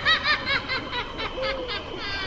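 A theatrical witch's cackling laugh: a quick run of short pitched syllables, about six a second, that slows into a longer, lower, falling tail near the end.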